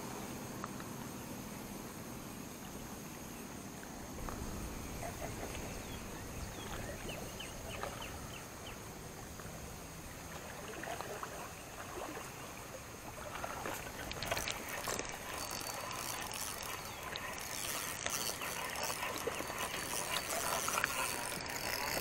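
Quiet lakeside ambience with a steady high insect drone, like crickets. Scattered faint clicks and rustles of handling run through it and grow busier in the second half.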